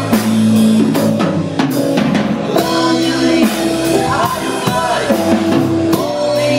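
Live rock band playing: drum kit, electric guitar, violin-shaped bass guitar and keyboards.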